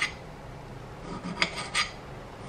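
Small kitchen knife slicing cherry tomatoes on a ceramic plate, the blade scraping against the plate in short strokes: one at the start, then two close together about a second and a half in.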